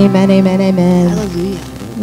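Worship music: a voice holding long, steady notes that shift in pitch a few times over instrumental accompaniment, fading somewhat near the end.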